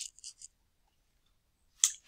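Near silence, broken by a single short, sharp click just before the end.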